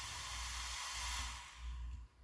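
Small cooling fan on a brushless ESC running with a steady hiss over a low hum, fading out about a second and a half in.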